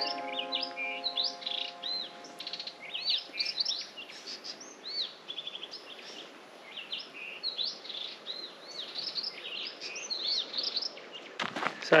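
Wild birds chirping and calling in dry bushland: many short, quick chirps that rise and fall in pitch, coming one after another.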